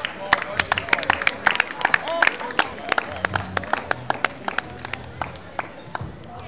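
A few spectators clapping close by at the end of a grappling bout: sharp, separate hand claps, quick and many in the first half, thinning out towards the end, with voices over them.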